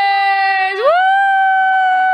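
A woman's voice letting out a long, held whoop on one steady pitch, then sliding up about an octave just under a second in and holding the higher note.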